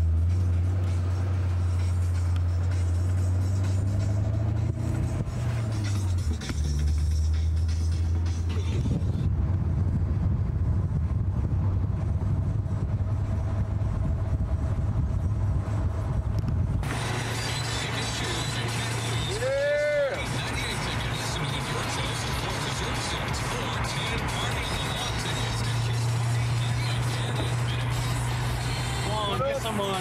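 Car engine droning while driving, heard from inside the car, its pitch shifting up and down in the first few seconds. About 17 s in, the sound suddenly opens up with more road and traffic noise, and a single rising-then-falling call comes about 20 s in.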